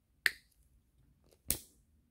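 Two sharp clicks about a second and a quarter apart, the second from the igniter of a flexible-neck butane utility lighter sparking its flame to shrink a heat-shrink crimp connector.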